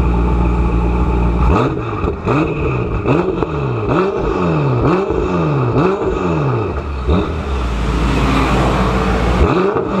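ECU-tuned twin-turbo V8 heard right at its exhaust tip: idling, then revved in a quick series of about eight throttle blips, each rising and falling in pitch, with sharp cracks among them. It settles back to idle and is blipped again near the end.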